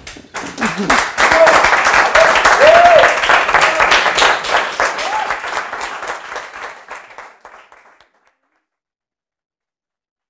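A small group applauding, with a few voices heard over the clapping; the applause fades out about eight seconds in.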